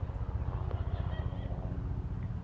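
A low, uneven rumble with nothing higher over it.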